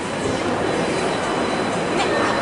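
Steady background noise of a busy shopping-centre atrium, even and unbroken, with a faint thin high tone running through it.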